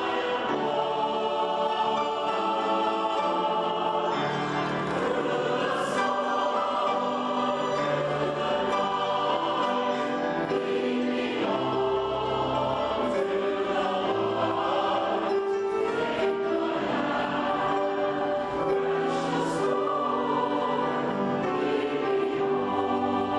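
Mixed church choir singing a hymn in parts with orchestral accompaniment, in long held chords that move at an even pace.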